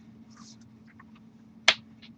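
One sharp, loud smack of hands meeting during sign language, near the end, among faint rustles and small clicks of moving hands over a low steady hum.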